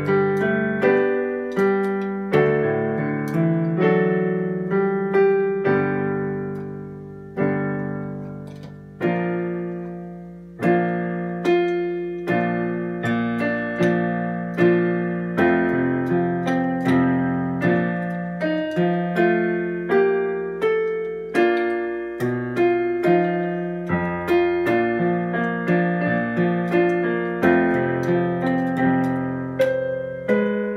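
Electronic keyboard with a piano sound, played in full chords: a slow patriotic tune. About eight seconds in, long held notes fade away before the chords resume at a steady pace.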